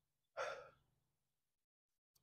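A single short breath from a man, about half a second in, then near silence.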